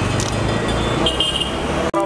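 Busy street traffic: vehicle engines running with a steady low rumble, a short horn toot about a second in, and crowd voices mixed in. The sound breaks off abruptly just before the end.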